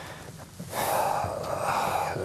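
A man's audible breathing close to the microphone: a soft breath at the start, then a louder intake of breath through the mouth lasting about a second.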